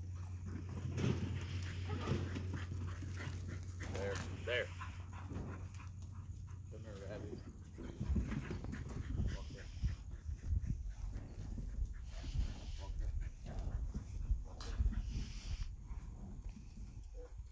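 A herding dog whining in short, bending cries, twice about four seconds in and again about seven seconds in, over low uneven rumbling noise.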